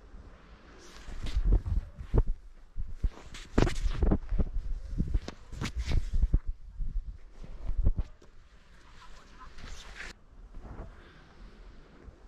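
Boots crunching and scuffing in snow, mixed with low thumps from handling the camera, as a hiker climbs down a steep snowy slope holding a fixed rope. The steps come unevenly and die down after about eight seconds.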